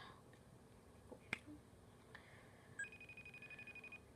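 Faint sounds from a smartphone placing a call: a single sharp tap about a second in, then, from near three seconds, a thin high-pitched tone that pulses rapidly as the call is going out.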